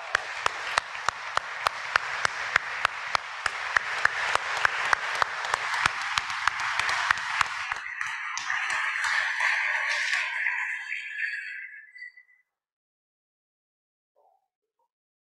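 Audience applauding, with one clapper close to the microphone standing out in sharp, even claps about three a second. The applause thins and fades out about twelve seconds in.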